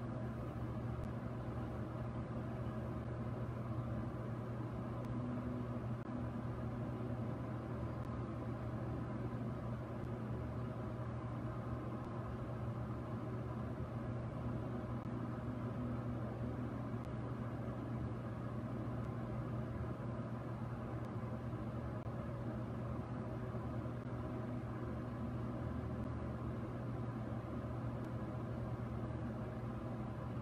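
Steady low hum with a faint even hiss, unchanging throughout.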